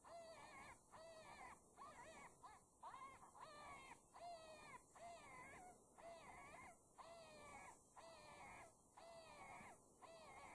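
FoxPro electronic game caller playing a recorded animal call: a faint, short wavering cry repeated steadily, roughly every three-quarters of a second.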